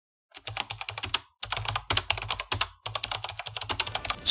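Keyboard typing sound effect: three quick runs of key clicks, about ten a second, each run separated by a short pause.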